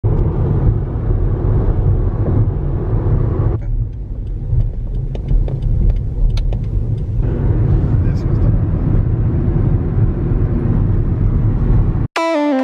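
Road noise inside a moving car: a steady low rumble of tyres and engine. For a few seconds in the middle it thins out as the car slows through a ticket gate, with a few light clicks, then the fuller rumble returns.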